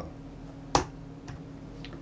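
A single sharp computer keystroke about three quarters of a second in, entering the typed formula, followed by two much fainter ticks. A low steady hum runs underneath.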